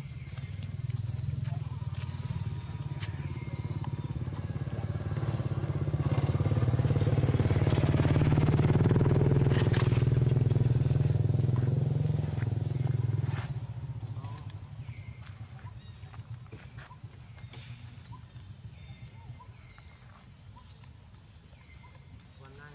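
A motor vehicle's engine running, getting louder over several seconds, then fading away about 14 seconds in.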